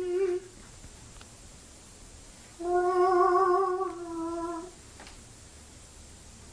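A man humming a few held notes: a short phrase that ends about half a second in, then a longer phrase of about two seconds that drops a step at its end.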